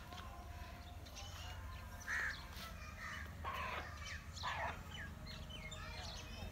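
Birds chirping and calling: short, quick chirps with a few harsher calls about two, three and a half and four and a half seconds in.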